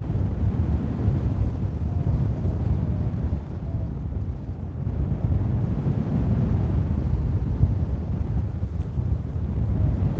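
Wind noise on a phone's microphone during a paraglider flight: a steady low rumble of airflow buffeting the mic.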